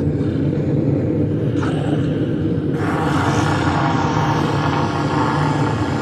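Dark, droning soundtrack music with a low sustained rumble; a hiss-like wash of noise swells in about three seconds in.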